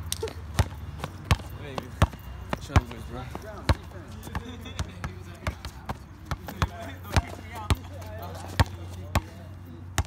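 Basketball being dribbled on an asphalt court: about a dozen sharp bounces, unevenly spaced, roughly one every second or less.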